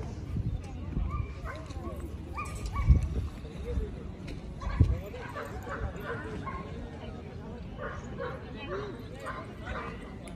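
Dogs barking in short bursts over people talking in the background. The barks come in quick runs in the second half, and two dull thumps, louder than anything else, land about three and five seconds in.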